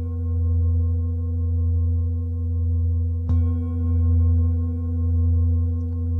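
Large metal singing bowl resting on a person's back, ringing with a deep hum and several higher overtones. It is struck once with a mallet about three seconds in, and the ring wavers in slow swells.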